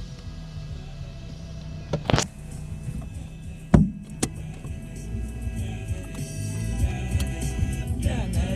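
Music playing on the car radio inside a moving car, over a steady low rumble from the road and engine. A few sharp knocks break in, about two and four seconds in.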